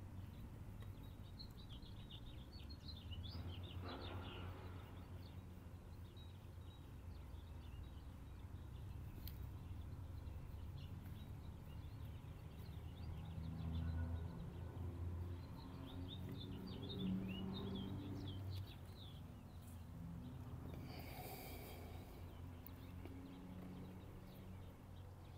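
Small birds chirping in quick, twittering spells, one early and one in the middle, over a steady low rumble of outdoor background noise. A brief rustle near the end.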